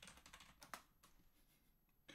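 Faint computer keyboard typing: a quick, uneven run of soft key clicks that thins out after about a second, with near silence afterwards.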